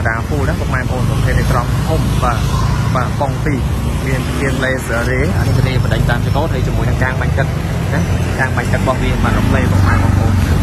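A person talking over a steady low rumble of street traffic.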